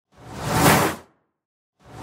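A whoosh sound effect that swells up and fades away in about a second. A second whoosh begins to rise near the end.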